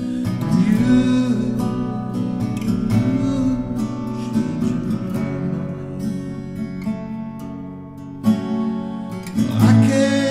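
Acoustic guitar playing an instrumental passage of a song, strummed chords ringing on.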